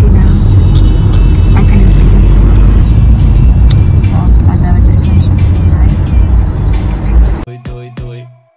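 Loud, low road rumble inside a moving car's cabin. It cuts off sharply about seven seconds in and music takes over.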